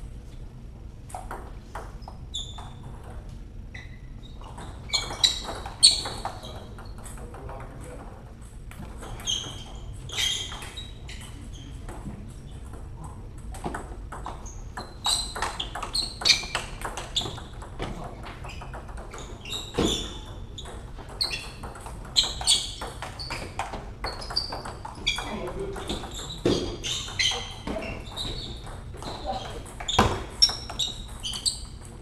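Table tennis rallies: the celluloid-type ball clicking off bats and table in quick exchanges, several rallies with pauses between them.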